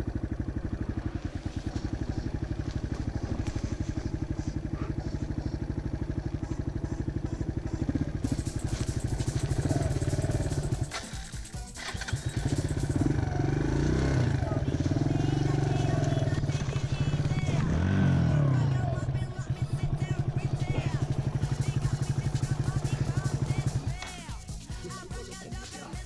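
Off-road motorcycle engine running at low trail speed, its note rising and falling with the throttle. It dips briefly about halfway through and again a few seconds later.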